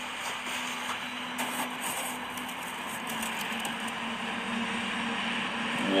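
Steady low mechanical hum held at one pitch, over an even hiss of background noise.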